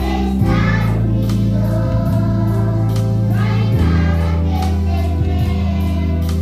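A group of young children singing a song in unison over accompanying music with a steady beat and a bass line that shifts to a new note about half a second in and again near four seconds.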